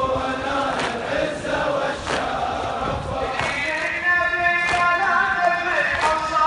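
A large crowd of marchers chanting in unison, the voices holding long pitched lines, with a sharp beat about every second and a quarter.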